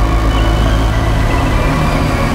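Slow cinematic background music: long held chords over a deep, steady bass.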